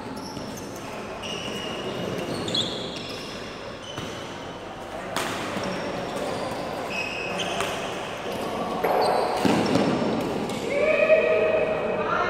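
Badminton rally on an indoor court: sharp racket strikes on the shuttlecock and short squeaks of sports shoes on the court floor, echoing in a large hall. The loudest strikes come about five and nine seconds in, and a voice calls out near the end.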